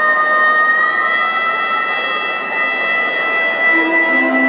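Harmonica holding one long, steady note through a stadium PA over a wash of crowd noise. Lower notes from another instrument come in near the end.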